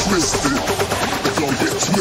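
Electronic dance music from a hardstyle, Brazilian bass and slap house fusion mix: fast, clicky percussion under short, bending synth-bass notes, with the deep sub-bass dropped back.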